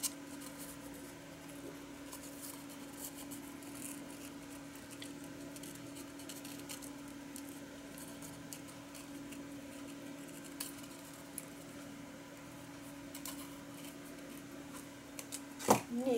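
Small craft scissors fussy-cutting around a paper cutout: faint, scattered snips of the blades through paper over a steady low hum. A louder knock comes near the end.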